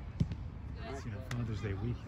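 A single sharp thud of a soccer ball being kicked, about a fifth of a second in, followed by voices talking.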